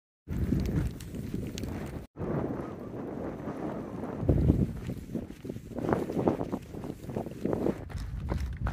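Quick, regular footsteps of a hiker moving fast on a dirt trail, with wind buffeting the microphone.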